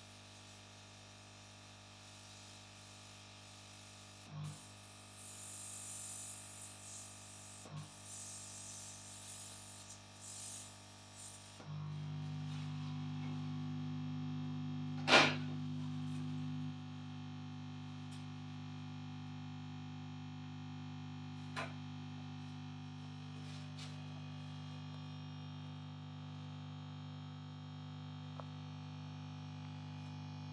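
Air blower hissing as it dries the glue holding electrodes on the scalp, with a couple of small clicks. About twelve seconds in the hiss stops and a steady low electrical hum takes over, with a sharp click a few seconds later.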